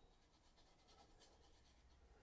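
Near silence, with faint scratching strokes of a flat brush scuffed over dry oil paint on a board.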